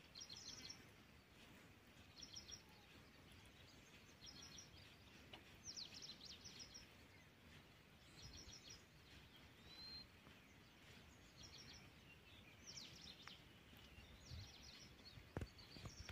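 Near silence with a small bird faintly repeating a short phrase of quick, high chirps every couple of seconds.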